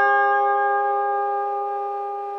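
Electric guitar chord held and ringing out, fading slowly.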